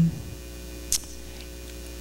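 Steady electrical hum with a few faint steady tones from the hall's microphone and sound system during a pause in speech, with one short soft hiss about a second in.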